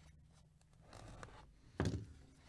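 Gloved hands handling a trading-card package: faint rustling and scraping, then one dull thump near the end as it is knocked or set down on the cardboard box.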